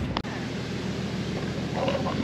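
Outdoor background noise: a steady hiss with a low hum underneath, after a sharp click just after the start.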